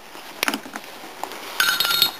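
Cutters snipping the excess tail off a plastic zip tie fastened around a carburetor choke knob: a sharp click about half a second in, a few faint ticks, then a short run of rapid light clinks near the end.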